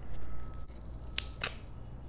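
A roll of double-sided score tape being handled and pulled out, with two sharp clicks a little past the middle, about a quarter second apart.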